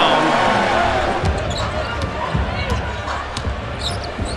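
Arena game sound during a basketball game: steady crowd din with a basketball bouncing on the hardwood court several times at an uneven pace, and faint commentary.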